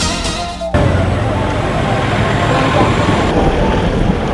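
Newscast theme music cuts off abruptly under a second in, replaced by steady road noise of traffic passing on a highway, with some voices.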